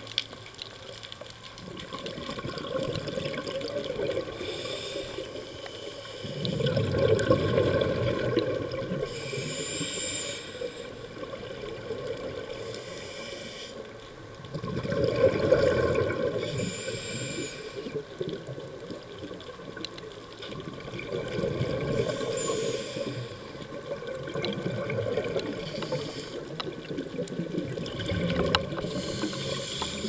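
Scuba diver breathing through a regulator: a short hiss on each inhale, then a bubbling rush of exhaled air, repeating every several seconds.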